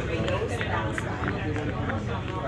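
Indistinct chatter of other passengers over a steady low rumble.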